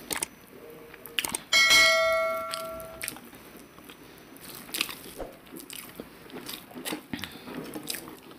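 Close-miked eating sounds: fingers squishing rice and mashed greens on a plate, and chewing, with soft clicks. About a second and a half in, a click is followed by a bell chime that rings and fades over about a second and a half, the sound effect of an on-screen subscribe-button graphic.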